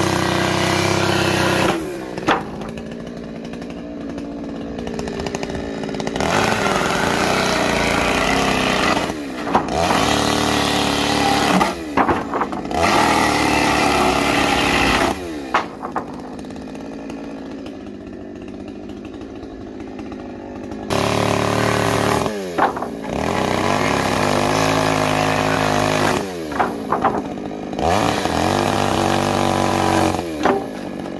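Chainsaw cutting the ends of wooden roof boards: it revs up to full throttle for each cut and drops back to idle for a few seconds in between, several times over.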